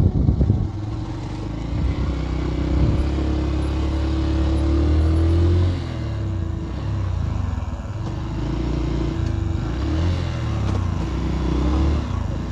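Motorcycle engine running and revving as it rides through soft sand, its pitch rising and falling unevenly. It drops a little quieter about six seconds in.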